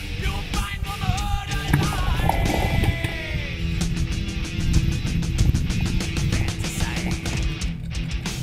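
Background rock music with a fast, even beat.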